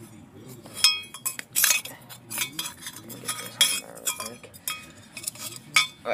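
Metal exhaust parts clinking and knocking together as they are handled: an irregular string of sharp metallic clinks, some ringing briefly.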